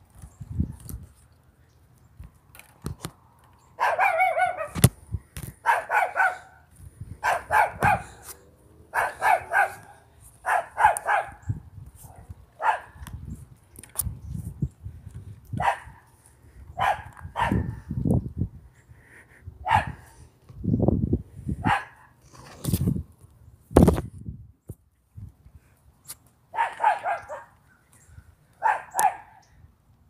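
A dog barking over and over, single barks and short runs about every second or two with a few short pauses. Occasional knocks and low rustles are mixed in.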